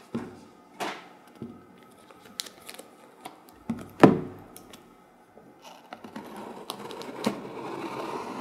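A cardboard shipping box handled on a tabletop: a few sharp knocks and taps, the loudest about four seconds in as the box is laid down flat. From about six seconds a ragged scraping starts as a blade is drawn across the box's packing tape.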